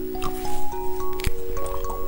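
Wet squishing and sucking mouth sounds, with a few sharp smacks, as jelly drink is sucked and squeezed from a plastic syringe. Background music with held notes plays throughout.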